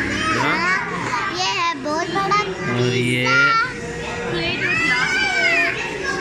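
Several children's high voices chattering and calling out as they play.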